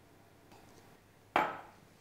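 Faint room tone, then a single sharp knock about one and a half seconds in, fading quickly: a glass sauce jar set down on a wooden chopping board.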